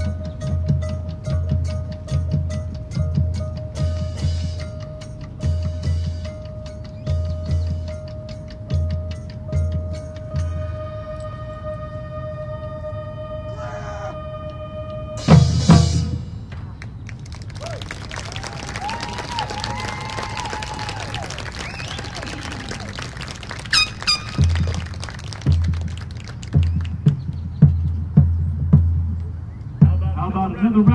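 High school marching band playing: deep drum beats in a steady rhythm under a long held note, then one loud full-band hit about halfway through. A quieter stretch follows before the drum beats return near the end.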